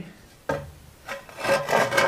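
A long straightedge rule rubbing and scraping against a brick wall as it is moved along the wall. The sound starts suddenly about half a second in and is strongest near the end.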